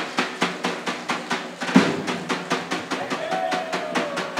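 Tapan, a large double-headed folk drum, beaten in a fast, even rhythm of about five strokes a second for a Macedonian folk dance. A held higher tone joins near the end.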